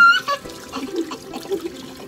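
Kitchen tap running water into a sink full of dishes. Right at the start there is a brief rising whoop, the loudest moment.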